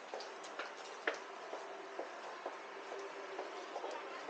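Footsteps on a hard tiled mall floor, heel clicks at about two steps a second with one sharper click about a second in, over faint mall background hum.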